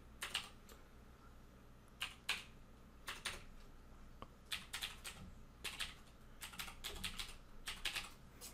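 Faint keystrokes on a computer keyboard, typed in irregular runs of quick clicks.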